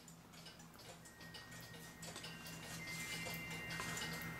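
Faint, irregular clicks and light scrapes of a carved wooden cuckoo clock crest being handled and turned over, over a low steady hum.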